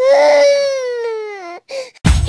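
A baby crying: one long wail that slowly falls in pitch and fades, then a short sob near the end.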